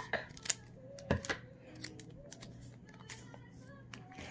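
Scissors snipping the foil crimp off a Pokémon booster pack: a few sharp snips in the first second and a half, then fainter handling clicks of the foil wrapper.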